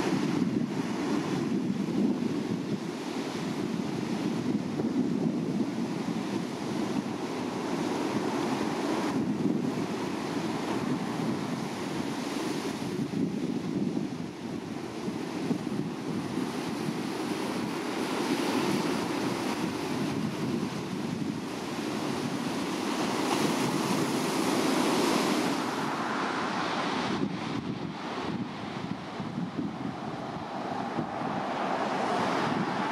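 Ocean surf breaking against a sea arch and the rocky shore: a continuous rush that swells and eases as the waves come in.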